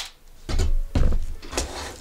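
Dull thuds and a knock on a tabletop as a drill and a plastic gadget are handled and set down: one about half a second in and a sharper one about a second in.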